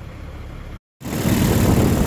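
A steady low hum, then a short dropout about a second in, after which a compact Kubota tractor's engine runs loudly under heavy wind noise on the microphone.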